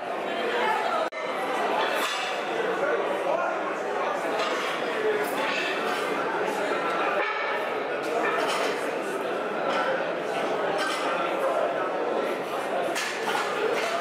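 Background chatter of many people in a large hall, with light metallic clinks of weight plates and barbells being handled.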